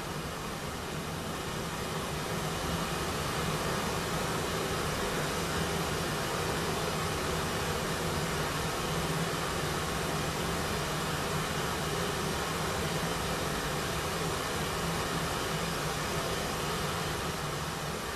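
Pink noise from the Żłob Modular Entropy analog Eurorack module: a steady hiss, rising slightly in level over the first few seconds. It is the white noise of a reverse-biased transistor filtered 3 dB down.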